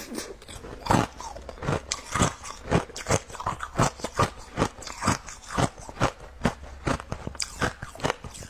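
Colored ice pieces being bitten and chewed close to the microphone: a run of sharp, hard crunches, about two a second.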